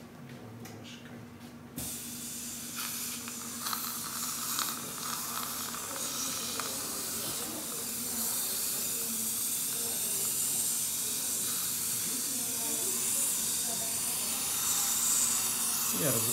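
Dental saliva-ejector suction running in the patient's mouth: a steady hiss that starts abruptly about two seconds in and grows slightly louder.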